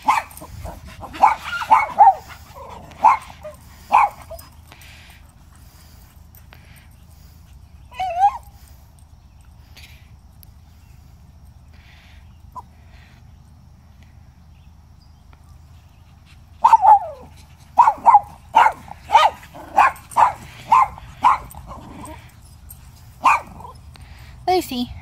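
Dogs barking: a few barks in the first four seconds, a single bark around eight seconds, then a fast run of barks, about two a second, from about seventeen to twenty-three seconds in.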